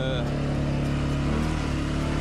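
CF Moto 520L ATV's single-cylinder engine running steadily under load while pulling up a steep, muddy slope in four-wheel drive.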